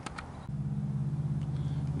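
Two short clicks. About half a second in, a steady low electrical hum starts: a few level tones with no speech over them.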